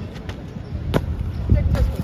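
A long jumper's run-up footsteps on a dirt runway, a sharp take-off stamp about a second in, then a heavy thud as he lands in the sand pit, with voices in the background.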